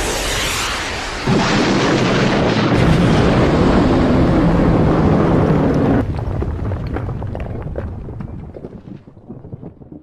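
A missile firing: a loud rushing roar that swells about a second in and holds for several seconds, then breaks off abruptly and fades into a crackling rumble.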